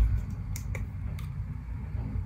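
A few faint sharp clicks of a small plastic hand sanitizer bottle being handled and its flip cap opened, over a low handling rumble.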